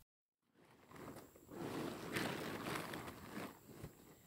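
After a brief silence, rustling of a tent's nylon fabric as it is handled, loudest in the middle and easing off near the end.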